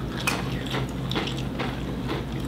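Tortilla chips being chewed: a few short, crisp crunches at irregular intervals over a steady low hum.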